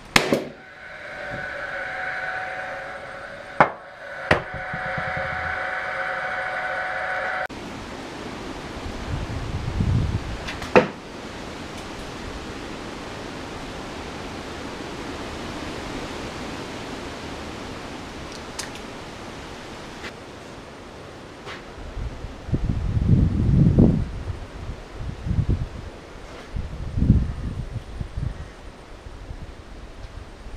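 Paslode gas-powered framing nailer shooting nails into pine framing timber: a few sharp bangs in the first eleven seconds, with the gun's fan whirring steadily for several seconds after the first shot and stopping suddenly. Irregular low thuds and bumps near the end as the timber is handled.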